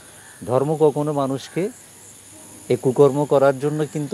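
A man speaking Bengali in two phrases, with a pause of about a second between them. A faint, steady high-pitched whine runs beneath.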